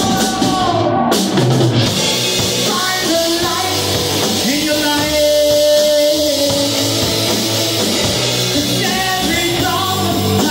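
A live rock band playing: distorted electric guitars and a drum kit, with a sung vocal line that holds a long note about halfway through.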